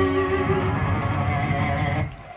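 Live pagan metal band playing, with guitars ringing out as a song closes, then cutting off abruptly at the end.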